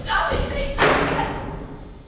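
A heavy thud on the stage set about a second in, with a brief ringing decay in the hall, after a shorter knock and some voice at the start.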